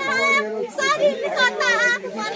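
A woman's high-pitched voice calling out in short, wavering phrases, with other voices around it.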